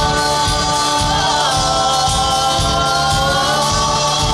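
Live country band playing an upbeat song with acoustic guitar, keyboard and drums, with voices holding long notes in harmony over a steady beat.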